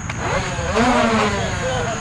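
Indistinct voices of several people calling out at once, loudest about a second in, over a low rumble and a steady high-pitched tone.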